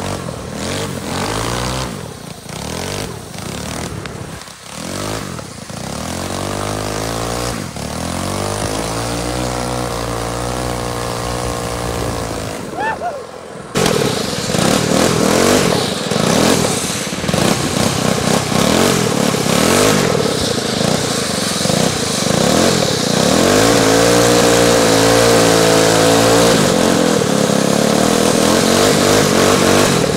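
Small gasoline engines of drift karts revving up and down as they are driven hard. About 14 seconds in the sound jumps louder into a steadier high-revving run.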